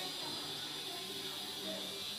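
Faint background music of soft held notes over a steady hiss.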